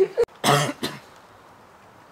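A person coughing, two short coughs about half a second in, after a sharp click; then only faint background noise.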